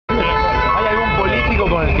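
Several car horns sounding together and held, over street traffic noise and people's voices.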